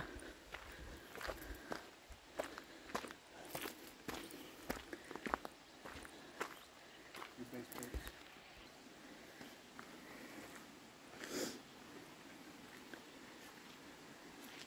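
Faint footsteps on a gravel and rock trail: irregular crunching steps through the first eight seconds or so, then thinning out.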